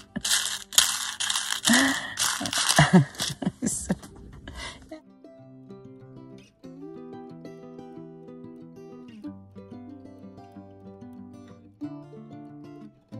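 Sequins and small embellishments rattling in a clear plastic box as it is handled and shaken, in quick dense bursts. After about five seconds this stops suddenly and background music takes over.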